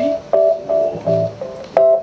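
Keyboard chords played in short, separate stabs, about six in two seconds, with a strong one near the end.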